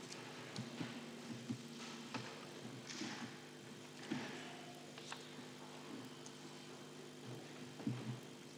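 Quiet room tone in a meeting hall: a steady low electrical hum with a few faint scattered clicks and soft rustles.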